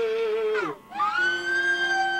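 Amplified sound from a live garage punk band: a held note slides down and breaks off about halfway through, then a high siren-like tone slides up and holds, with steady lower tones ringing under it.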